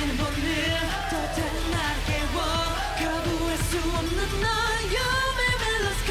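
K-pop dance song with male singing over a steady beat and bass.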